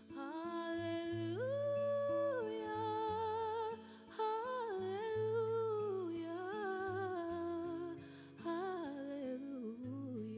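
A woman's voice humming a slow wordless melody, holding and bending notes with vibrato and pausing briefly twice, over a soft held keyboard pad and acoustic guitar.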